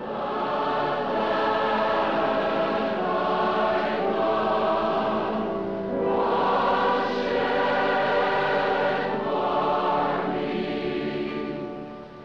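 A large choir singing a slow hymn in long, sustained phrases.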